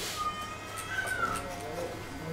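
Electric hair clippers humming steadily while cutting, with one drawn-out high-pitched call over them that starts early, rises in pitch about a second in and then falls away.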